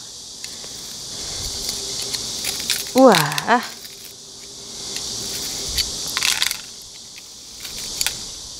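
A flat metal utensil scraping and grinding in gritty gravel potting mix inside a small ceramic pot, prying at a root-bound succulent to loosen it. It makes scratchy rattling scrapes with small clicks, busiest near the end.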